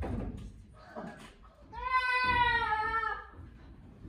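One long, high-pitched vocal cry from a performer, held steady for about a second and a half and dropping slightly in pitch at its end, starting a little under two seconds in.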